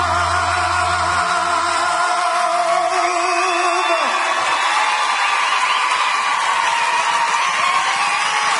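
A man's voice holds the final sung note over a band chord. The music stops about four seconds in, and a studio audience cheering and applauding takes over, with whoops.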